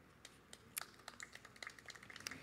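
Faint, scattered light ticks and rustles of book pages being handled and turned near a microphone, coming more often toward the end.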